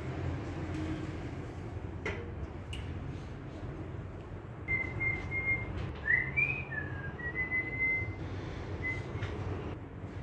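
A person whistling a short tune, a few high held notes with quick slides between them in the second half, over a low steady hum. A sharp click comes about two seconds in.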